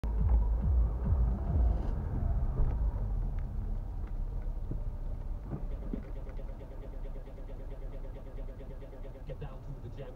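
Car cabin noise heard through a dashcam: low engine and road rumble, loudest at first and fading as the car slows in traffic. Faint rhythmic ticking comes in over the second half.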